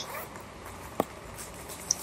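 A pause in speech: faint steady background hiss, broken about a second in by one brief sharp sound.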